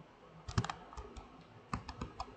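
Sharp clicks from computer input while handwriting on a digital whiteboard is being erased: a quick cluster about half a second in, then several single clicks.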